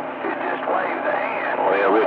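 CB radio receiver on channel 28 carrying weak, unintelligible voices from distant stations, squeezed into a narrow radio band, with a steady low hum underneath.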